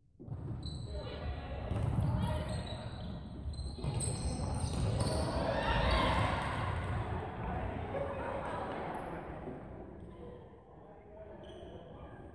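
Futsal ball being kicked and bouncing on a wooden gym floor, with players' feet on the court and their voices, all echoing in a large hall.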